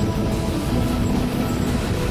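Bernina Express train running along the line, heard from on board as a steady, even rumble of the wheels and carriages.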